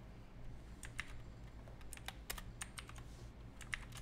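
Typing on a computer keyboard: irregular keystrokes, about three or four a second.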